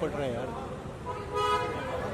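Voices calling out, then a short car horn toot about a second and a half in.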